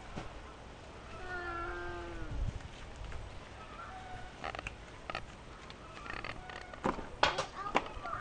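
A single drawn-out animal call, falling in pitch at its end, about a second in. Then a run of sharp knocks and clatters in the last few seconds, the loudest about seven seconds in.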